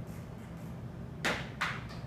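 Two short noisy swishes about a third of a second apart, over a steady low hum.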